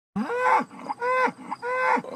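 A cow mooing three times in quick succession, each call rising and then falling in pitch.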